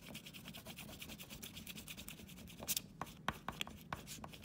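Crayon rubbed hard back and forth across paper, filling in a band of colour with rapid, even scratchy strokes. A few sharper clicks come about three seconds in.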